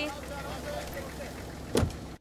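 A car door shutting once with a single heavy thump near the end, over steady low background noise.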